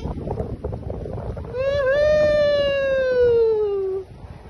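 A person's long held yell, starting about a second and a half in and lasting about two and a half seconds, slowly falling in pitch, from a zipline ride. Before it there is a noisy rush with no voice.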